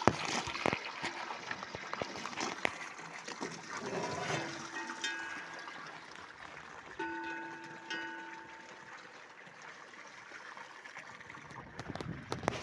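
Water trickling and splashing in a cattle trough. A metal cowbell on the drinking cow clanks twice, about four and seven seconds in, each note ringing on briefly.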